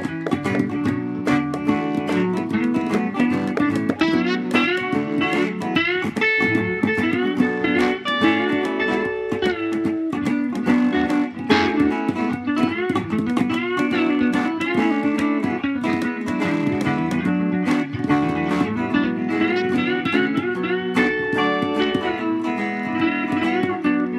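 Instrumental guitar passage: a plucked guitar playing quick runs of notes over a steady low accompaniment, with no singing.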